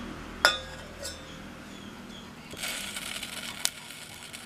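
A sharp metallic clink against a stainless steel pot about half a second in, ringing on briefly, then a softer knock. Near the end comes a short hissing rustle and another light click as small ingredients go into the oil in the pot.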